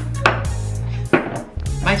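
A drinking glass knocked down hard on a wooden table: two sharp knocks about a second apart, over background music with a steady bass.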